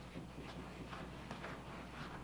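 Silicone spatula stirring thick cookie batter in a bowl, with dry cocoa powder being worked into the sticky mix: faint, repeated scraping strokes.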